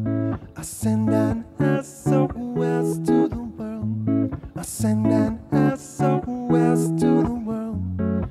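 Les Paul-style electric guitar playing a chord passage with no singing, note groups changing about every half second, broken by short sharp percussive hits about once a second.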